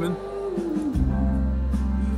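Live rock band concert recording playing, with sustained chords and low notes coming in about a second in.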